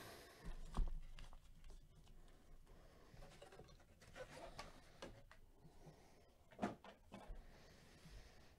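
Faint handling noise: a few soft knocks and rustles as gloved hands move a trading-card box and its packs, over quiet room tone.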